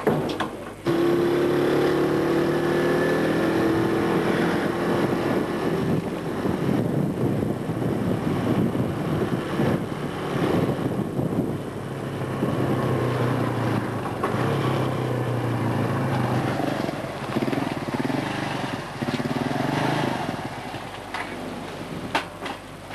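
Small motorcycle engine running while being ridden, starting about a second in, its pitch rising and falling as the rider speeds up and slows down.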